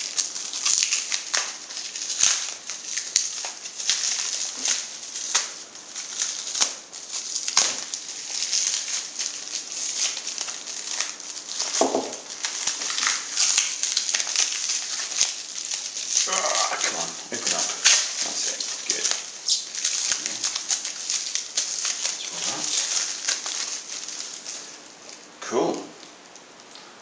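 Plastic packaging wrap being crinkled, pulled and torn off a bike light by hand: a continuous dense crackling and rustling.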